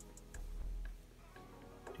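Black felt-tip marker making short strokes on paper, heard as a few faint ticks, over quiet background music.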